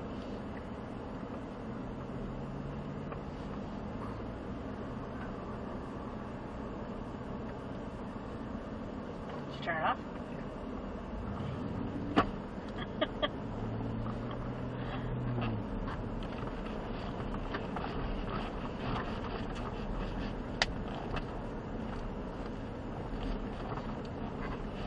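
Ford Raptor pickup crawling down a gravel trail at a walking pace, heard from inside the cab: steady low engine and tyre noise with a faint hum that comes and goes. There are a few sharp clicks or knocks from the truck rolling over the rough ground.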